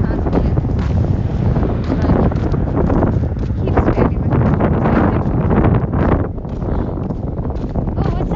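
Wind buffeting a phone's microphone, a loud steady low rumble that eases slightly about six seconds in.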